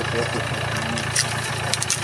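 A car engine idling steadily, with a few short clicks about a second in and near the end.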